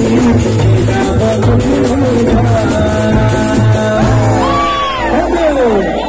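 Live band music played loud over a concert sound system, with a steady heavy bass beat and a sung melody. About four seconds in, the beat drops away and sliding, mostly falling tones take over.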